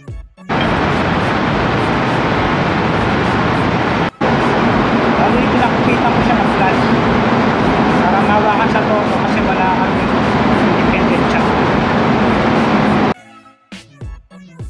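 Loud, steady machinery noise of a diesel generator running in a ship's engine room, with a hum under it. It starts suddenly, breaks for an instant about four seconds in, and cuts off near the end.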